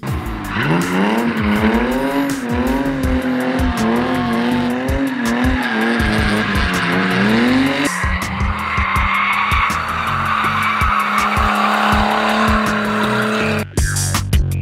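Drift cars sliding: an engine revving up and down with the tyres squealing and skidding, rising sharply just before a change about eight seconds in. Then a second car's engine holds a steady pitch at high revs over a continuous tyre squeal.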